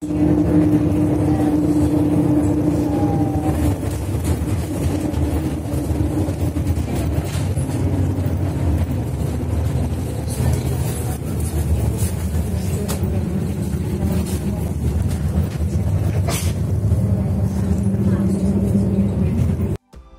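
Interior noise of a moving city bus: a steady low rumble of engine and road noise, with an engine hum running under it.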